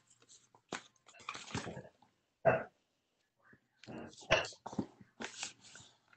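A paper airplane being flipped over and its second wing folded down by hand: the paper rustles and creases in a series of short, irregular crinkles and scrapes.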